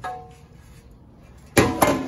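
Two sharp metallic clanks about a quarter of a second apart near the end, each with a brief ring: a 4L60E transmission's steel oil pan being pulled off and knocked against the bench and case.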